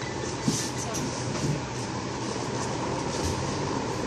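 Steady background din of a busy shop, with faint voices and a brief knock about half a second in.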